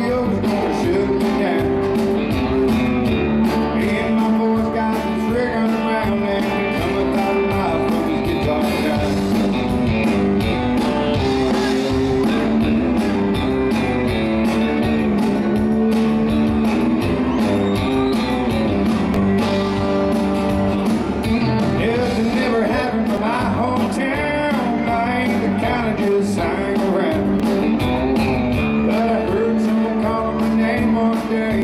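Live country-rock band playing an instrumental break with a steady drum beat: electric lead guitar, pedal steel, acoustic guitar, piano, bass and drums.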